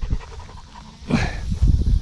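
A dog panting close by, with a low rumble near the end.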